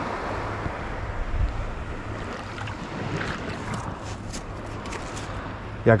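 Steady wind on the microphone over shallow sea water, with a few faint ticks in the second half.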